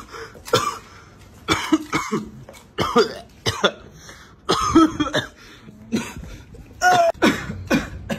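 A man coughing over and over, short coughs in quick clusters about every second, some ending in a brief voiced rasp.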